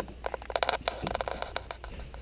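A rapid, irregular run of clicks and taps, densest in the first second and thinning out near the end, over a low steady room hum.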